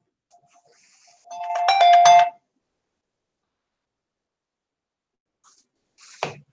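Mobile phone ringing: a short electronic chime of several stacked tones, about a second long, starting a little over a second in.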